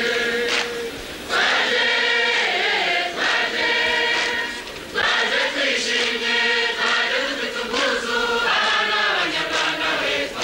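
A large group of performers singing a traditional chant-like song together, in long phrases with short breaks between them.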